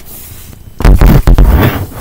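Handling noise from the laptop's built-in microphone as the laptop is carried and swung round: a loud, deep rumbling and rubbing that lasts about a second, starting a little before the middle.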